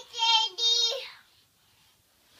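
A young child vocalizing in two held, high-pitched, steady notes, one right after the other, stopping about a second in.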